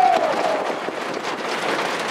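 A raised voice, held and falling in pitch, trails off within the first half second. Then a steady, noisy outdoor background with no clear single source.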